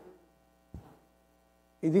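A pause in speech filled with faint, steady electrical mains hum, with one soft click about three quarters of a second in.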